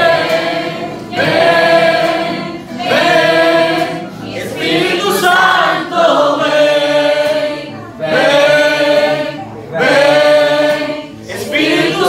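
Several men singing a worship song together into microphones, in loud sung phrases of a second or two each, with an acoustic guitar strummed beneath.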